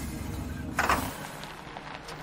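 Sound effect of a car engine running low and then dying about a second in, with a short burst of noise just before it stops: the car has run out of gas.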